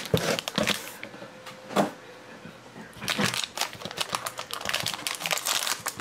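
Foil wrapper of a baseball card pack crinkling and tearing as it is handled and ripped open by hand. A few separate crackles come first, then denser crinkling over the second half.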